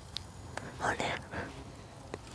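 Gloved hands digging and crumbling loose potting soil, a soft rustle in a few short spells about a second in.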